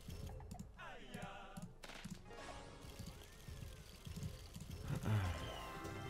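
Esqueleto Explosivo 2 slot game's music and sound effects as the reels spin and a small win lands.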